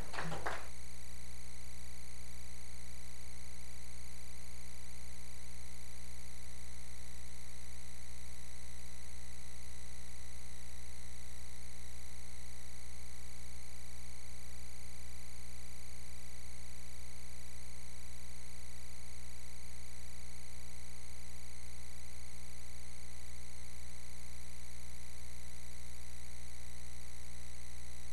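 Steady electrical mains hum and buzz, unchanging throughout, after a trailing sound dies away in the first half second.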